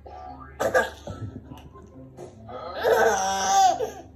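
A toddler laughing: a short burst of laughter just under a second in, then a long, high squealing laugh near the end.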